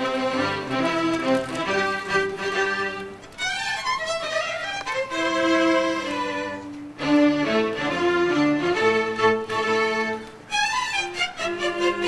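A string orchestra, violins leading over cellos, plays a piano concerto. The music starts abruptly and runs in phrases broken by brief pauses every few seconds.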